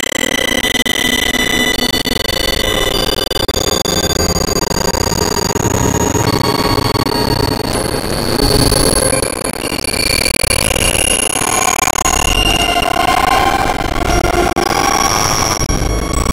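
Experimental electronic synthesizer noise: a dense, loud drone with many sustained high tones layered on top, each holding a pitch for a second or several before stopping as others come in at new pitches.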